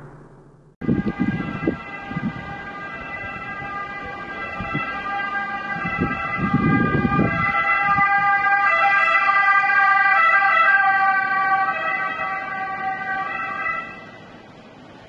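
Emergency vehicle siren, several steady tones at once. It comes in about a second in, grows louder to a peak around two-thirds of the way through, then fades.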